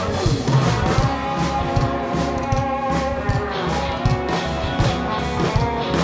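Live rock band playing an instrumental passage with no vocals: electric guitars holding sustained notes over bass and a steady drum beat.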